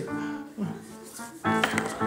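Music of held keyboard notes, softer at first, with a louder new chord coming in about a second and a half in.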